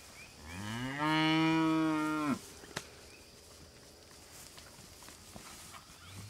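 A heifer mooing once, a long call of about two seconds that rises in pitch at first, then holds steady and cuts off sharply. A single sharp click follows shortly after.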